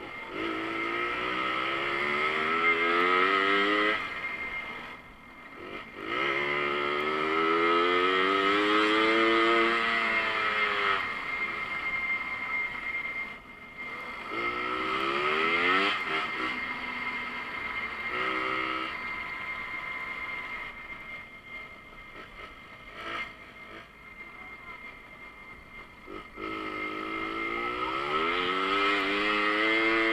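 Small two-stroke moped engine running under way, its note climbing and falling back several times as the throttle is opened and eased. It drops quieter and lower for several seconds past the middle before rising again near the end, with a steady high whine running through it.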